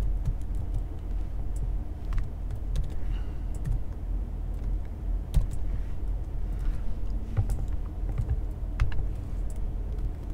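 Computer keyboard typing: irregular, scattered keystrokes over a steady low hum.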